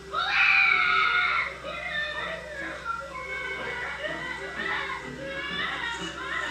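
Cartoon film soundtrack: a child crying out loudly for about the first second and a half, then whimpering on over music.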